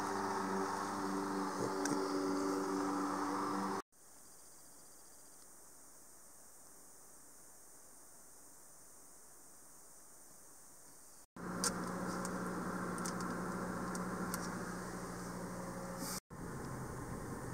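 Spliced sound in three parts: a steady mechanical hum with several held tones for about four seconds, then near silence for about seven seconds, then a car's cabin noise while driving, a steady low hum with road noise.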